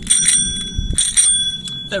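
A handheld bicycle bell rung twice, near the start and about a second in, each strike giving a bright ring of several high tones that fades over most of a second.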